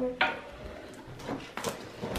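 A cardboard advent calendar door being pushed open: a sharp snap just after the start, then a few light clicks and rustles of handling.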